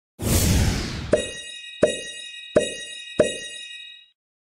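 Edited intro sound effect: a rushing swell that fades over about a second, then four sharp hits roughly two-thirds of a second apart over a steady high ringing tone.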